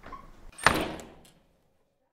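A door being shut: one sharp thud about half a second in that dies away within a second.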